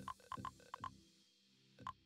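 Short, soft pitched blips of a customised Windows 10 alert sound, about six in quick succession and then one more near the end, played each time a search finds no match.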